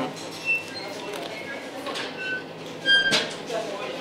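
Bakery shop background: a low hum of distant voices with scattered short, high clinks, and one louder, sharper clink about three seconds in.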